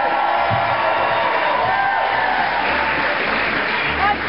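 Studio audience applauding and cheering loudly and steadily.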